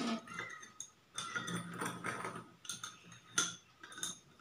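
Metal spoon clinking and scraping against a small steel bowl while stirring sand into water, with the sharpest clink a little past three seconds in.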